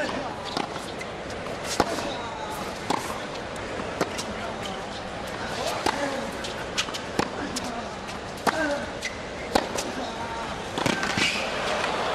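Tennis rally: racket strikes on the ball and ball bounces on the hard court, sharp knocks about a second apart, over a steady crowd murmur and faint voices.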